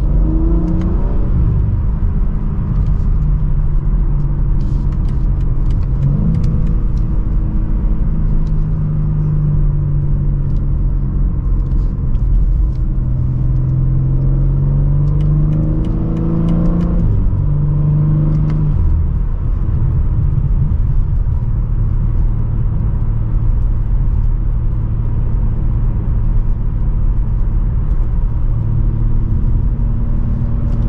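A BMW M3 Competition's S58 twin-turbo inline-six heard from inside the cabin while driving. The engine pitch climbs and dips several times over the first twenty seconds or so as it pulls and shifts up through the gears, then settles into a steady low drone at a light cruise, with road rumble underneath.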